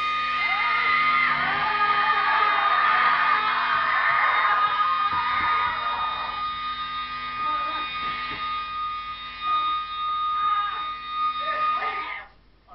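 Guitar amplifier left on after the song, a steady high feedback tone over hum, while men yell and whoop; the tone cuts off suddenly near the end.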